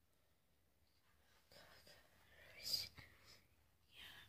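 Near silence, broken about halfway through by faint whispering with one short, sharper hiss.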